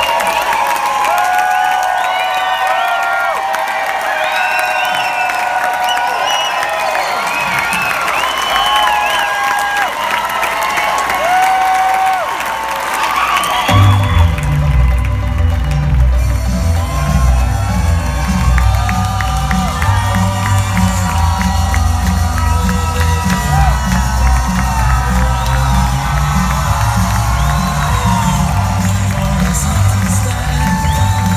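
Concert audience cheering and whooping after a rock set. About fourteen seconds in, loud music with a heavy bass beat starts and carries on under the cheering.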